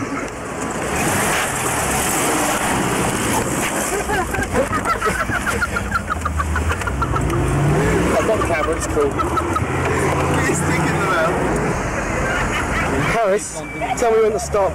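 Car engine and road noise heard inside a moving car, a steady drone that shifts in pitch now and then, with indistinct voices talking over it.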